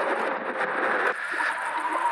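Wind rushing over the microphone and tyre noise from an Ariel Rider X-Class 72V electric bike riding along a road, with a faint steady whine from its motor.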